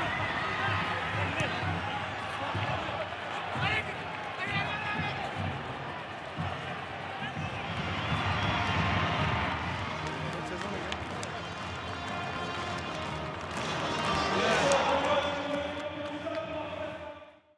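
Voices and crowd noise in a rugby stadium at full time, swelling about halfway through, with a short music sting coming in near the end.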